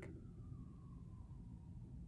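Low steady hum of a room air conditioner, with a faint high tone sliding slowly down in pitch.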